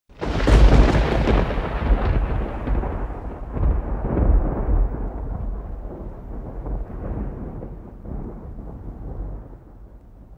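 Thunder-like sound effect for a logo intro: a sudden deep boom that rolls on as a rumble and slowly fades away over about ten seconds.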